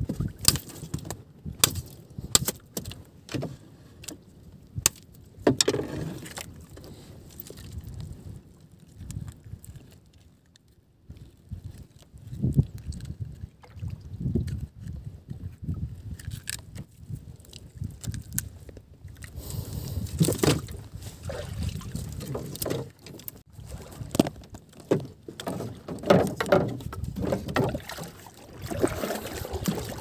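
Water slapping and sloshing against a small outrigger boat's hull, with scattered sharp knocks and clatter on the boat. It goes quieter for a few seconds before the middle and gets busier again in the second half.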